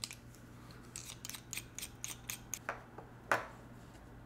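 Resin fountain pen being unscrewed by hand, its barrel twisting off the section: a run of small dry clicks and ticks, with one louder click a little after three seconds in.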